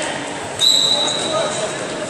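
Voices echoing in a sports hall during a wrestling bout, with one sudden high, steady, whistle-like squeal about half a second in that lasts under a second.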